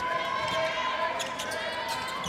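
A handball bouncing on the court floor during play, with a few sharp knocks a little past a second in, over players' and arena voices.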